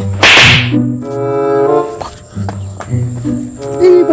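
A loud, sharp whip-like swish or slap sound effect near the start, followed by comic background music in short held notes.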